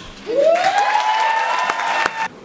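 Audience applauding and cheering as a beatbox round ends. About a third of a second in, one voice whoops, rising in pitch and then holding.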